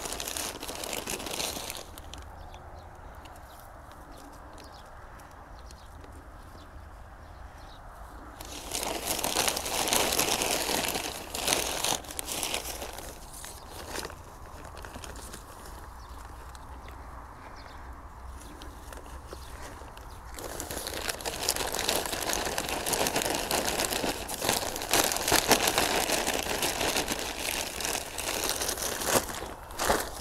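Plastic rustling and crinkling as a sack of potting soil and a potted seedling are handled. The sound comes in spells: at the start, about a third of the way in, and through most of the last third, with quieter stretches between.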